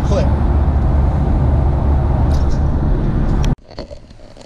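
Road noise inside a car cabin at highway speed: a loud, steady low rumble that cuts off abruptly about three and a half seconds in.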